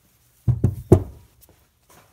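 Polished cast-aluminium Harley-Davidson Shovelhead rocker box knocking down onto a rag-covered floor as it is set down: three knocks within about half a second, about half a second in.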